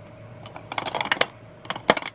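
Hard lipstick cases clicking against one another and against an acrylic organizer as they are handled. There is a quick run of small taps a little past halfway, then one sharp click near the end.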